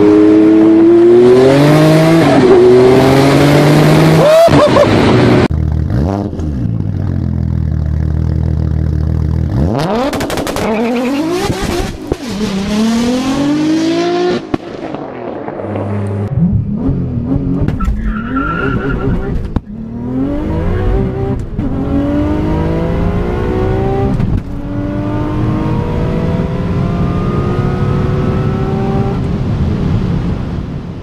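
Twin-turbo flat-six of a 1,200 hp Porsche 993 Turbo accelerating hard, heard from inside the cabin, its pitch climbing and dropping back at each gear change. After a cut, a steadier engine sound, then a 1,000 hp tuned Audi RS4 saloon accelerating flat out through several gears.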